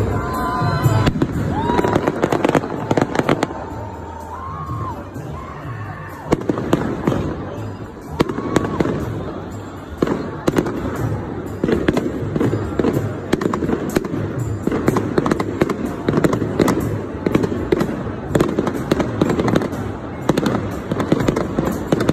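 Consumer fireworks going off repeatedly, with many sharp bangs and crackles throughout, and a few whistling tones in the first few seconds. A crowd's voices run underneath.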